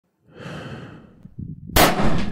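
Intro sound effects: a soft, breathy whoosh, then a low rumble, then a sudden loud explosion-like blast near the end.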